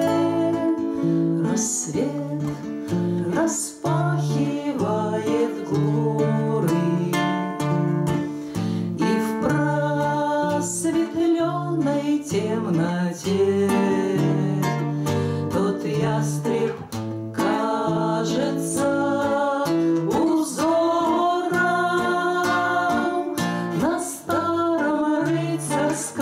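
Russian bard song performed live by two women singing in duet to two acoustic guitars.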